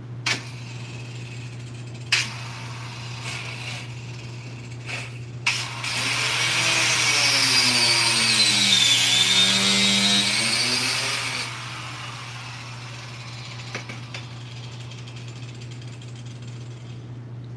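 Handheld angle grinder with a cut-off wheel cutting into a car's rear bumper valance for about five seconds, its whine sagging in pitch as the wheel bites and climbing back as it eases off. A few sharp clicks come before it.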